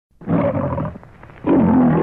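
The MGM lion logo roar: a lion roaring twice, each roar just under a second long, with the narrow, muffled sound of an old film soundtrack.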